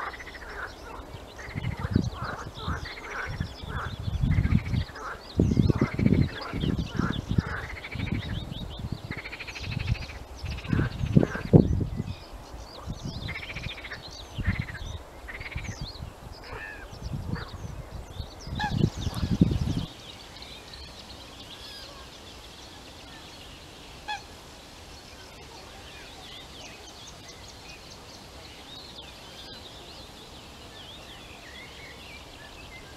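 Birds calling over a wetland: a long run of short rising-and-falling calls, several a second at times, with smaller birds singing higher and low rumbling bursts underneath. About twenty seconds in, this stops suddenly, leaving only faint high birdsong.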